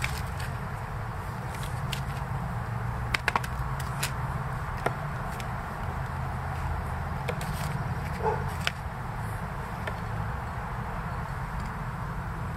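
Small red potatoes being picked out of loose potting mix and dropped one by one into a plastic pot, giving a few light knocks and taps, over a steady low background rumble.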